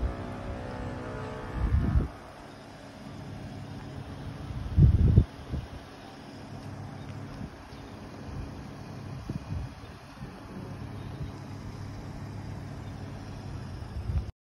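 A vehicle engine running steadily with a low hum, with wind buffeting the microphone briefly about two seconds in and again, loudest, around five seconds in.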